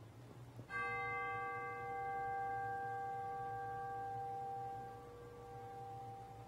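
A single bell struck once, about a second in. Its several tones ring out steadily and slowly fade, the lower ones lingering longest. It is a memorial toll sounded after a name of the departed is read.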